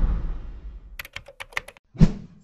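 A low whoosh fades out, then comes a quick run of about seven keyboard-typing clicks in under a second: a typing sound effect as text is entered in a search bar.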